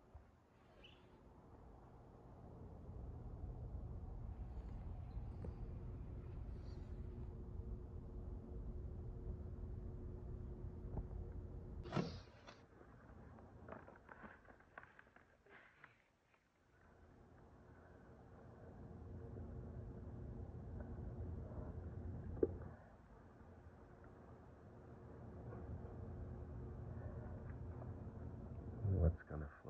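Gusty wind on the microphone as a low rumble that swells and fades, dropping away briefly past the middle before building again, over a faint steady hum. A sharp knock comes about twelve seconds in, followed by a few clicks.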